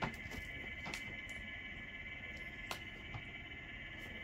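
Quiet room tone: a steady high-pitched hum with a few faint, brief clicks.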